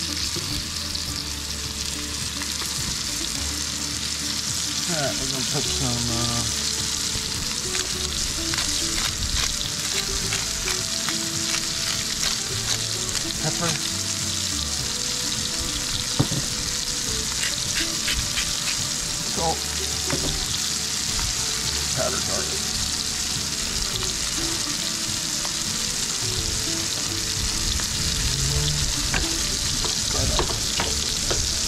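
Ribeye steak and sliced zucchini and onions sizzling in a cast-iron skillet and a steel pan over a propane camp stove, a steady hiss with frequent small crackles and pops.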